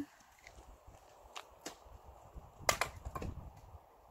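Footsteps on a dirt path, a few irregular scuffs and crunches, the strongest a little past the middle.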